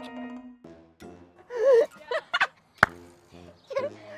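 Short bursts of laughter and wordless vocal sounds from two women, with a single sharp click a little before three seconds in. A steady low tone fades out in the first half-second.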